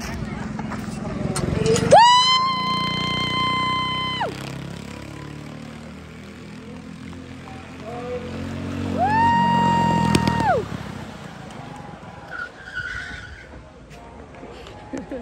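Two long blasts of a horn, each held at one steady pitch for about two seconds, several seconds apart. Underneath, quarter midget engines run low.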